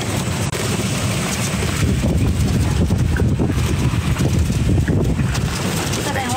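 Wind buffeting the microphone of a moving open-sided vehicle, a loud, low rumbling noise that grows stronger about two seconds in.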